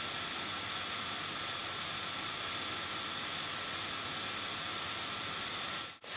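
Steady recording hiss with faint high whining tones from the microphone and its electronics, with no other sound. It drops out briefly at the very end.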